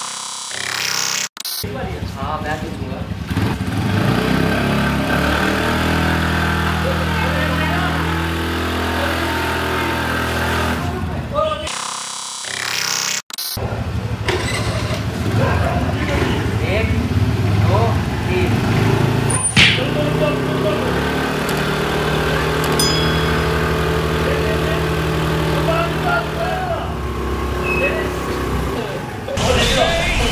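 Two single-cylinder scooter engines, a Honda Activa 5G and a TVS Ntorq, held at steady high revs under load as they pull against each other on a rope, with voices calling out over them. The sound cuts off abruptly about a second and a half in and again near the middle, then starts again.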